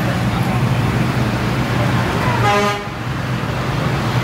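Steady low hum of road traffic, with a short vehicle horn toot about two and a half seconds in.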